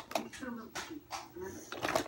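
Soft, indistinct speech, with a few scattered clicks and rattles.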